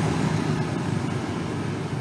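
Steady road traffic from motor scooters passing on a city street, easing off slightly.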